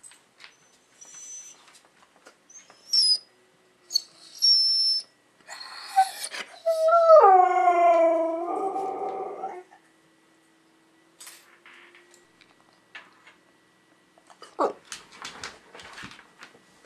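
Siberian husky vocalizing: a few short high-pitched whines in the first five seconds, then a loud drawn-out howling call that falls in pitch and turns rough before it stops, and one short call near the end.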